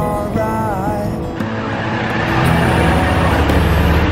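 Green city bus moving past at very close range, its engine rumble and road noise swelling from about a second and a half in and loudest near the end, with background pop music underneath.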